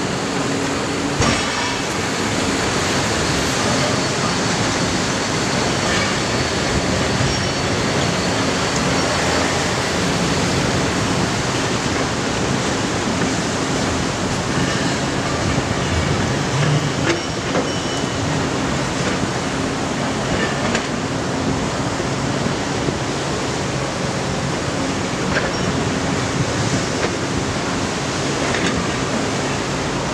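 A steady, loud outdoor roar with a low engine hum running under it: traffic and heavy machinery, with no single event standing out.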